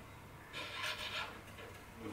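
Faint rubbing and scraping of a classical guitar string being threaded through a tuning-peg hole in the slotted headstock, with a few soft scrapes about half a second to a second in.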